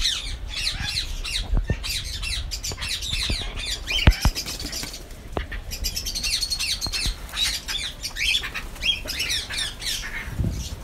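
A colony of cockatiels squawking and chattering continuously, many short, quickly falling calls overlapping. A sharp knock stands out about four seconds in.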